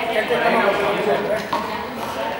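Speech only: voices talking in a large hall.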